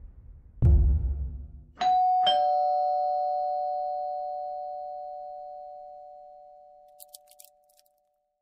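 A deep boom about half a second in, then a two-tone doorbell chime: a higher ding and, half a second later, a lower dong, both ringing on and fading slowly over several seconds. A few faint clicks near the end.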